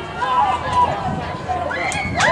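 Voices shouting and calling out from the sidelines and field during a high school football play.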